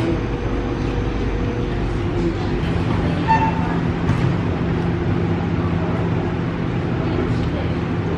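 Supermarket background noise: a steady low hum with faint voices of other shoppers.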